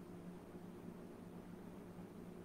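Faint steady low hum with a soft background hiss.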